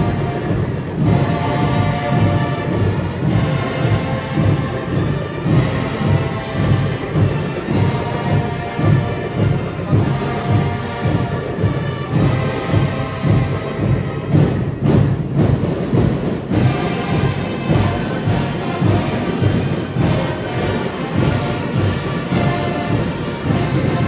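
School marching band playing: brass holding sustained chords over a large section of bass drums keeping a steady beat.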